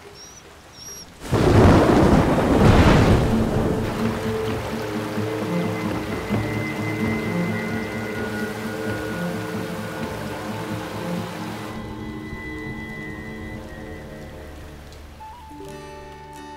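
A loud thunderclap about a second in, followed by heavy rain that fades slowly, with a soft score of held music notes underneath.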